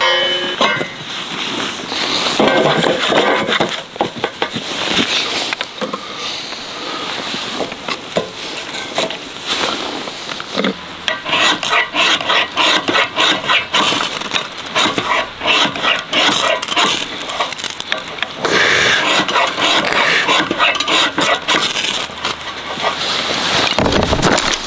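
A metal fire stand and firewood are handled with clanks and knocks. Then a ferrocerium fire-starter rod is scraped over and over in quick strokes to throw sparks into tinder, until it catches.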